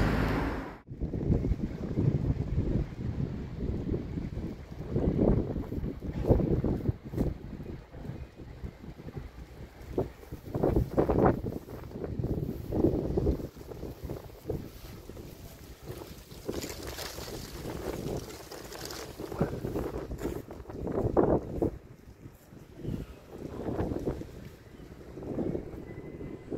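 Wind buffeting the microphone, an uneven low rumble that rises and falls in gusts.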